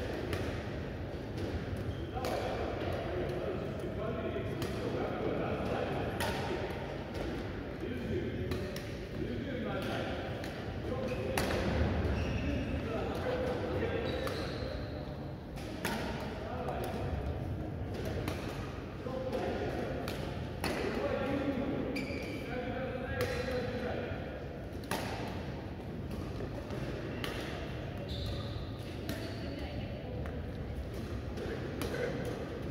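Badminton rackets striking shuttlecocks in a feeding drill, a sharp crack every second or two, with voices in a large hall.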